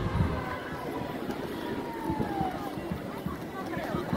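Busy city ambience: a hubbub of distant voices and shouts, with one long drawn-out voice in the middle, over a low rumble of traffic.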